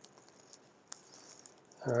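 A few faint, scattered computer keyboard key clicks as a terminal command is finished and entered, with a man's voice starting near the end.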